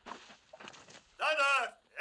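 A man's voice calls out once, loud and short, about a second in, over faint rustling.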